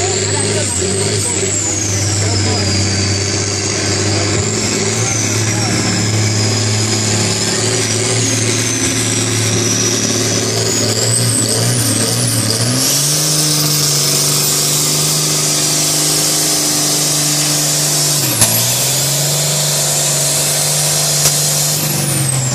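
Diesel engine of a John Deere farm tractor running hard under load while pulling a weight-transfer sled, with a high whistle gliding up and down above it. About halfway through, the engine note steps up and holds, then dips briefly near the end.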